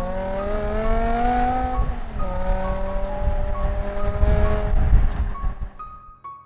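BMW E60 M5's V10 engine pulling hard under acceleration, its pitch climbing for about two seconds, dropping sharply at an upshift, then climbing again more slowly before it fades near the end.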